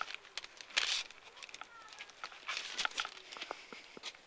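Foil wrapping of a flower bouquet crinkling in short, faint rustles as it is handled.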